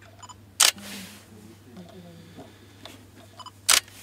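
Nikon digital SLR taking two shots about three seconds apart. Each shot starts with a short electronic focus-confirmation beep, followed by the sharp clack of the mirror and shutter firing.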